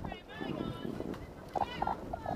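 Raised, high-pitched voices shouting in short calls, too distant or indistinct to make out words.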